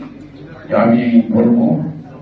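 Speech only: a man speaking into a handheld microphone, in a short phrase after a brief pause.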